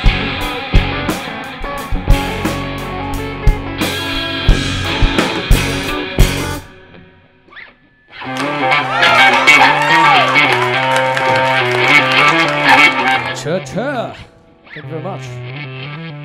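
Live rock band with drums and electric guitars, ending a song about six seconds in. After a short pause, an electric guitar plays alone with bent notes, stops briefly near the end, then starts again.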